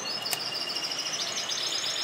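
A bird trilling: a rapid run of high, evenly repeated notes, about a dozen a second.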